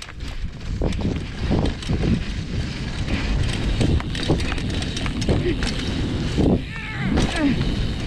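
BMX bike riding over a dirt track heard from a camera on the bike or rider: a steady rushing of wind on the microphone and tyres rolling on packed dirt, with scattered clicks and knocks from the bumps.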